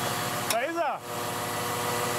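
Diesel engine of a Caterpillar 962 wheel loader idling steadily with an even hum. About half a second in, a short voice call is heard over it.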